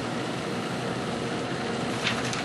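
Steady, even background hiss of room ventilation, with no distinct events.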